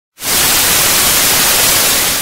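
TV static sound effect: a loud, steady hiss of white noise that starts a moment in.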